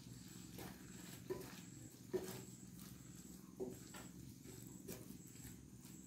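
Wooden spatula stirring grated carrot in a nonstick pan: faint scraping with a few soft knocks of the spatula against the pan, over a low steady hum.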